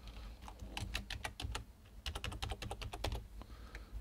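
Computer keyboard typing a password: two quick runs of keystrokes, the first starting about half a second in and the second about two seconds in.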